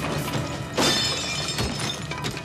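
Action-film soundtrack: score music with a sudden loud crash about a second in, trailing off in a brief bright ringing.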